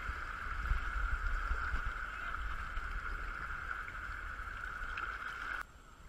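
Creek water rushing through a riffle around a kayak, a steady rush over a low rumble. It cuts off abruptly near the end.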